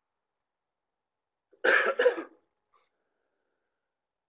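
A person coughs twice in quick succession, about a second and a half in.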